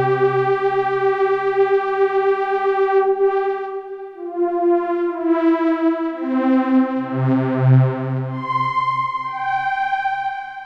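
Korg Prologue-16 16-voice analogue synthesizer playing a preset: held chords that change about four seconds in and again about seven seconds in, the tone brightening and dulling in slow swells. A deep bass note joins near the second change.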